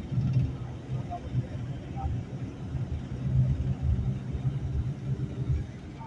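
Low, uneven rumble with a steadier low hum beneath it, and a couple of faint short chirps about one and two seconds in.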